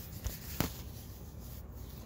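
Rustling of gourd leaves being handled, with one sharp snip a little over half a second in as a yellowing leaf is cut off the vine.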